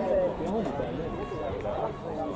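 Spectators talking near the microphone, several voices overlapping without clear words.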